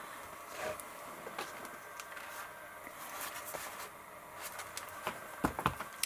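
Soft rustling and light clicks of paper being handled on a craft table, with a few sharper clicks near the end.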